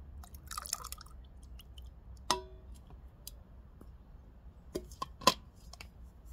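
Crockery clinking: a few sharp clinks, each with a short ring. Two are louder, about three seconds apart, and the loudest comes about five seconds in, after a brief rustle near the start.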